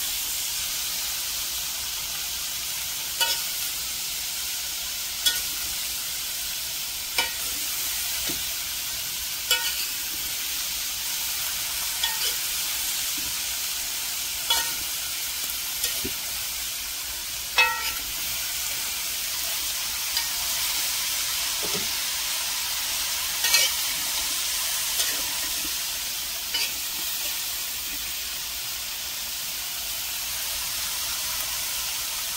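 Shredded cabbage sizzling in a large metal pan as a metal spoon stirs it. The spoon scrapes and knocks against the pan every two or three seconds. The cabbage is frying in its seasoning with no water added.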